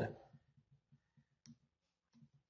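One short, faint click about one and a half seconds in: a key on a Casio fx-991ES scientific calculator pressed with a pen tip, moving the cursor.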